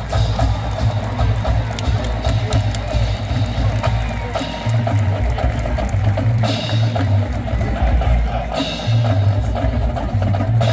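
Marching band drumline playing a cadence: bass drums under sharp stick and rim clicks, with louder accents about every two seconds in the second half.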